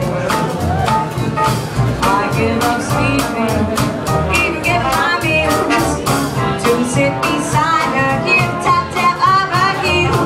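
A small live jazz band playing a lively number, with upright double bass and drums keeping a steady beat under a wavering melody line.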